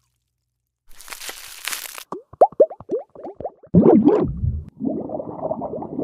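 Wet, sticky skincare-product sounds: a brief rustling hiss, then about a dozen quick plops that each fall in pitch, a louder low squelch, and a stretch of soft squishing.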